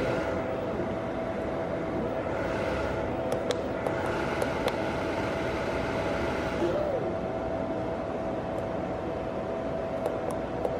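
Steady whirring hum of a 100 W LED spot moving-head light's fan and motors, swelling for a few seconds in the middle, with a few light clicks of its front-panel menu buttons being pressed.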